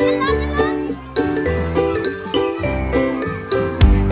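Background music with a steady beat and a repeating melody of short notes.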